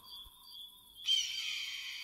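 A bright, high twinkling sparkle effect swells up suddenly about a second in, with falling glittery glides, and then fades away. Before it there are faint, evenly spaced high chirps, about three a second.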